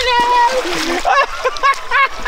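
A man's long, held yell ends about half a second in, together with a splash of water in the shallows at the shore's edge. Laughter follows.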